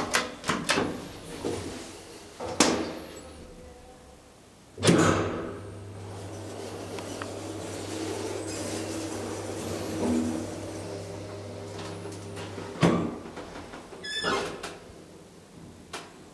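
1980s KONE hydraulic elevator: clicks from the car's floor button, a knock, then a loud clunk about five seconds in as the hydraulic pump motor starts and hums steadily for about eight seconds while the car travels. It stops with a sharp clunk, followed by a short rattle near the end.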